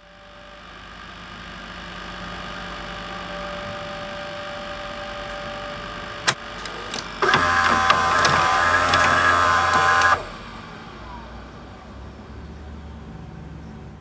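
Electronic glitch and static sound effects: a hum swells up, a sharp click comes about six seconds in, then a loud buzzing burst of static starts about a second later and cuts off suddenly after about three seconds, leaving a quieter hum.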